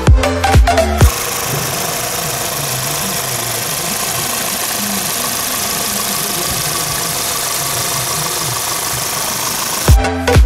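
Music with a beat for about the first second. Then it cuts out and a Volkswagen Vento's 1.6-litre four-cylinder engine idles steadily under an even hiss, until music resumes at the very end.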